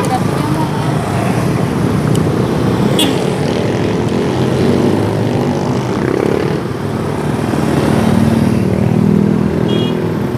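Street traffic, mostly motorcycles, running past in a steady wash of engine and road noise, with a low engine hum growing louder about eight seconds in as one passes close.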